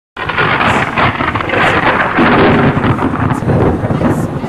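Loud, continuous rumbling rush of noise like thunder with rain, starting abruptly.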